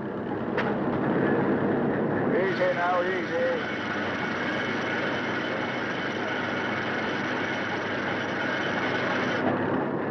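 Fishing boat's engine running steadily under the hiss of an old film soundtrack, with a few short rising-and-falling calls about two and a half to three and a half seconds in.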